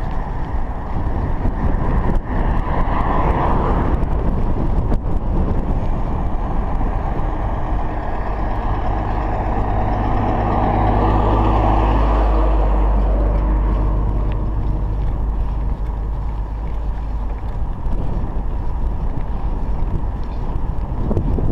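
Wind rumbling on the chest-mounted action camera's microphone as the bicycle rolls along, with an oncoming truck's engine and tyres swelling as it passes a little after halfway, then fading.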